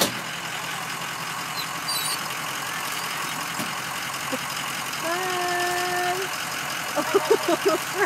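Engine of a stopped school bus idling steadily. A single held note sounds for about a second just past the middle, and laughter comes near the end.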